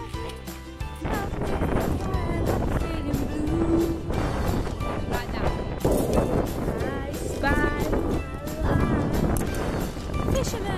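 Background music playing, with wind buffeting the microphone from about a second in.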